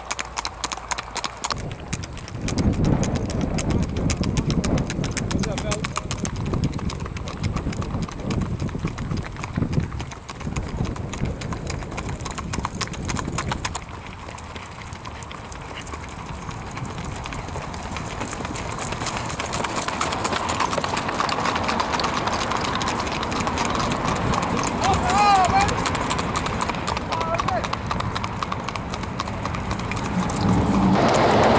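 Hooves of gaited horses clip-clopping on an asphalt road in a fast, even singlefoot rack, several horses passing in turn, louder as each comes close.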